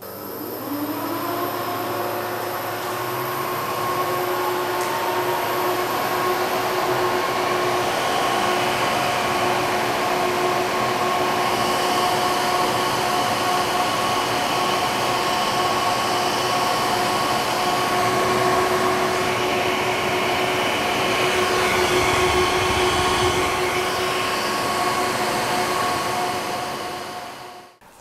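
Fans of a laser-cutter fume-extraction setup running during an acrylic cut: a steady rush of air with a hum of several tones. The tones rise in pitch over the first couple of seconds as the fans come up to speed, then hold steady.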